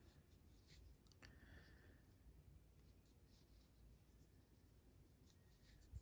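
Near silence with the faint rustle of yarn drawn over a crochet hook as single crochet stitches are worked, with a few small clicks.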